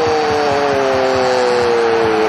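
A football commentator's long drawn-out cry on one held note, slowly falling in pitch, over stadium crowd noise, reacting to a goalkeeper's diving save of a shot.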